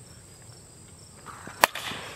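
A plastic wiffle ball bat hitting a pitched wiffle ball: one sharp crack about a second and a half in, a solid hit that carries for a home run.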